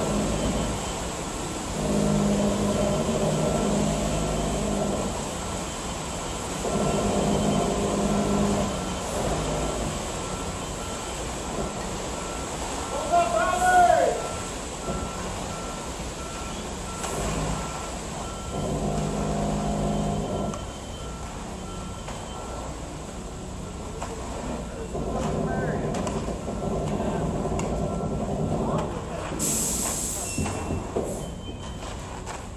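Construction machinery engines running, rising in several spells of a few seconds, with a backup alarm beeping steadily through the middle stretch.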